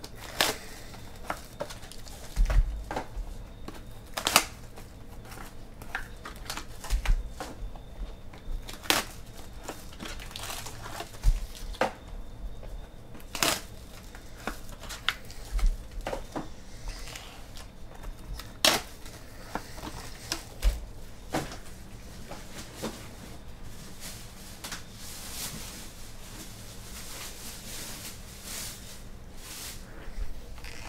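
Foil-wrapped trading card packs being handled and set down into stacks: crinkling foil with irregular sharp taps and clicks, and a few soft low thumps as packs land on the table.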